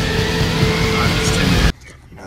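Loud distorted rock music with electric guitar, cutting off suddenly near the end and leaving only the low hum inside a car cab.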